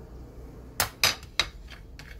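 Three quick knocks of plastic kitchenware, coming about a second in within just over half a second: a plate tapped against a plastic mixing container as chopped tomato is tipped and knocked off into the flour.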